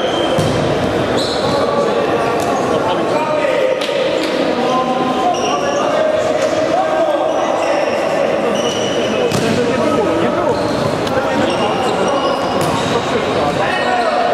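Futsal ball being kicked and bouncing on a sports-hall floor, with short high squeaks and players' shouts, all echoing in the large hall.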